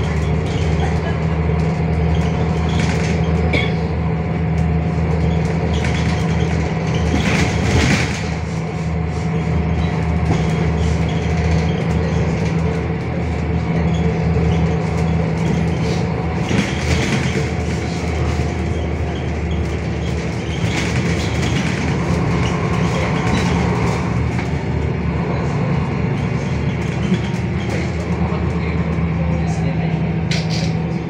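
Interior sound of a MAN NL323F city bus under way, its MAN D 2066 LUH diesel engine running steadily with a low drone. Occasional short rattles and knocks from the cabin cut through the drone.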